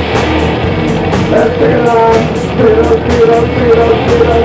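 Loud live garage-psychedelic rock band playing: distorted electric guitars held over bass and drums, with cymbals struck in a steady rhythm.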